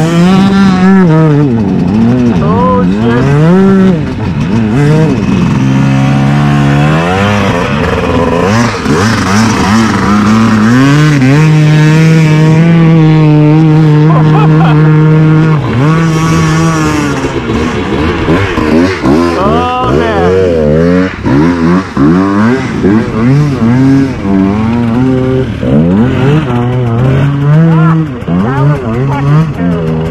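Dirt bike engine revving up and down over and over as the bike is ridden through a deep river crossing. Its pitch is held steady and high for several seconds midway.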